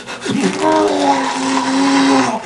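A person's voice holding one long wailing "oh" in a steady pitch, starting about half a second in.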